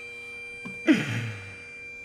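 A man's short sighing breath about a second in, its pitch falling quickly, over a faint steady drone of held tones.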